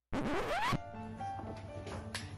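A short, loud upward-sweeping sound that rises for well under a second and cuts off abruptly, followed by quiet background music with held notes.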